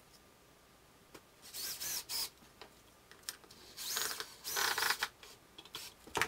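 Cordless drill driving screws into a wooden board, in two bursts with a motor whine that winds up and down, about a second and a half in and again about four seconds in.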